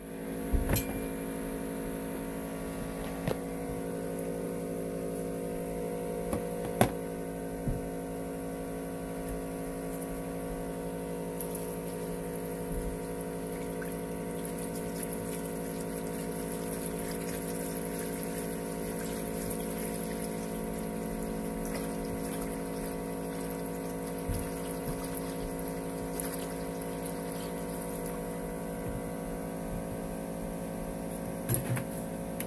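Rust-remover liquid (Evapo-Rust) poured from a jug into a plastic tub over a submerged bayonet, over a steady hum, with a few brief clicks.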